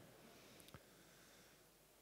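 Near silence: room tone, with one faint click.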